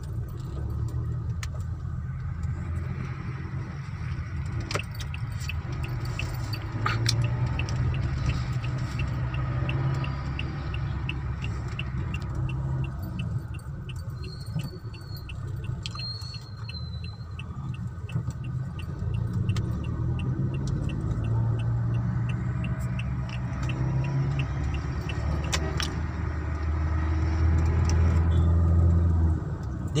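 Car driving in traffic, heard from inside the cabin: a steady low engine and road rumble. A light, regular ticking runs for about a dozen seconds in the middle.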